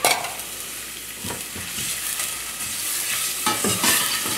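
Chopped onion and garlic sizzling in hot olive oil in a stainless-steel pot, being stirred with a spoon that clicks and knocks against the pot a few times. The sizzle grows louder over the second half.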